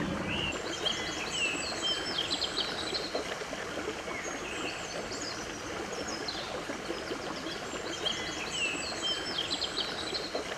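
A songbird singing quick, chirping phrases in two longer runs, one near the start and one near the end, with a few shorter calls between, over a steady background hiss.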